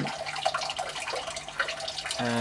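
Water in a small aquaponics system running and splashing steadily.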